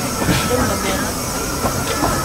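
Narrow-gauge steam train's coach rolling along the rails, heard from an open-sided carriage: a steady running rumble with irregular clicks and knocks from the wheels and couplings.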